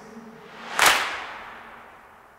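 A single sharp percussion hit about a second in, ending the song, then ringing out and fading away.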